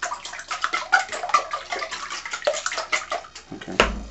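Wire whisk beating raw eggs in an enamel bowl: rapid, irregular clicking of the tines against the bowl with the eggs sloshing. A single louder knock near the end.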